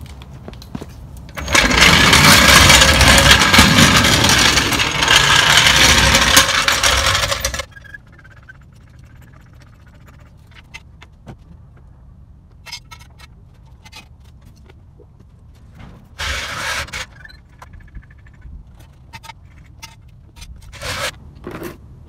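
Steel floor jack rolled across concrete, a loud scraping rumble for about six seconds that stops abruptly. Then scattered light clicks and clanks as the car is jacked up and set on jack stands, with two short scrapes later on.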